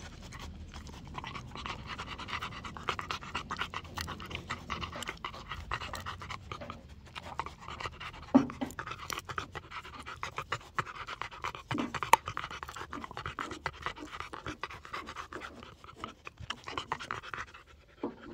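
A dog panting while it chews and smacks on a piece of bread, with many sharp chewing clicks. Two louder chomps come about eight and twelve seconds in.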